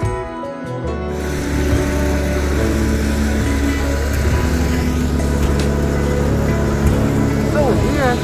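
Background music stops about a second in, giving way to the loud, steady low hum and hiss of aircraft engines.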